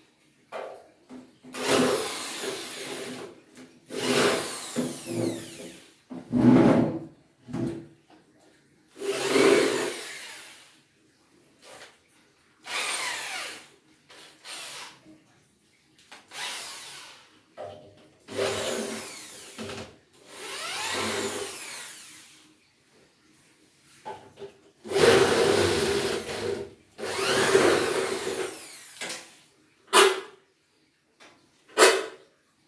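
Handheld cordless drill run in about ten short bursts of one to two seconds each, its motor speeding up and slowing down, while an aluminium door frame is being taken apart.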